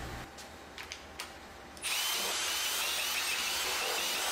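Cordless drill spinning out the valve-cover bolts on a BMW M52 engine. It starts suddenly about two seconds in and runs steadily. Before it there are a couple of faint clicks.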